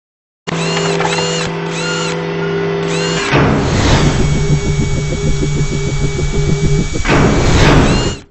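Sound effects of an animated logo intro: a steady machine-like whirr with a short chirp repeating several times, a whoosh a little after three seconds, then a pulsing whirr and a second whoosh near the end.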